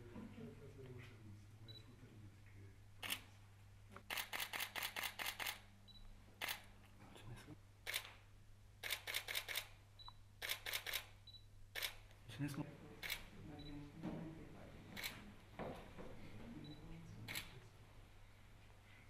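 Camera shutters clicking while a group photo is taken: single shots and quick bursts of about five clicks a second. Faint voices and a low steady hum sit underneath.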